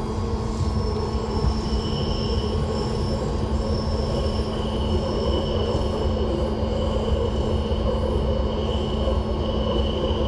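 BART C1 rapid-transit car running at speed, heard from inside the car: a steady rumble of wheels on rail with a constant hum. A high-pitched wheel squeal comes and goes every second or two.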